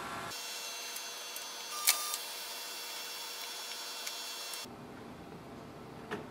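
Canon Pixma TR4700-series all-in-one printer scanning through its automatic document feeder: a steady mechanical whir with a single click about two seconds in, stopping shortly before the end.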